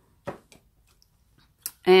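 A light knock and a fainter click from paint tins and a wooden stir stick being handled on the work table, then a woman's voice begins a word near the end.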